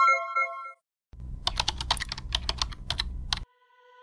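Computer keyboard typing sound effect: a run of quick key clicks for about two seconds over a low hum, the sound of a password being typed in. Before it, an electronic chime fades out in the first moment, and a faint tone begins near the end.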